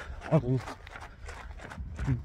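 Walking footsteps and a low rumble on a handheld phone's microphone, with one short spoken word about half a second in.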